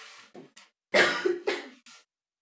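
A person coughing twice, loudly and abruptly, about half a second apart, after a few fainter breathy sounds.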